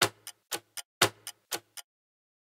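Clock-ticking countdown sound effect: about four ticks a second, the loudest tick once a second. It stops just before the end.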